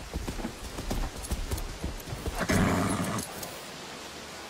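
A horse's hooves clip-clopping, an irregular run of knocks, with a louder sound lasting about half a second about two and a half seconds in.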